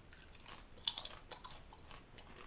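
A crisp tortilla chip being bitten and chewed: a run of faint, sharp crunches, the loudest about a second in.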